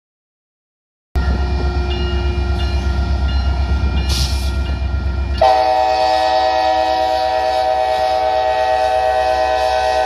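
A diesel locomotive's engine rumble starts abruptly about a second in; about halfway through, the locomotive's air horn starts blowing a loud, steady multi-note chord and holds it to the end.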